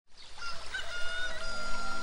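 A rooster crowing once in one long call, with music coming in near the end.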